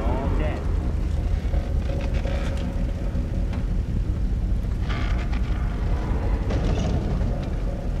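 Steady deep rumble throughout, with muffled voices at times and a brief harsher sound about five seconds in.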